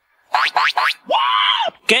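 High-pitched, cartoon-like sounds: three quick rising whoops, then one longer tone that rises and falls. A short spoken word comes at the end.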